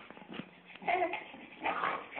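A young baby making two short vocal sounds, cooing or fussing, about a second in and again near the end.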